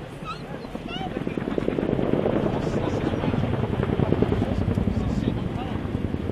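RAF CH-47 Chinook tandem-rotor helicopter in display flight, its two rotors beating with a rapid, steady blade slap that grows louder about a second and a half in as it banks.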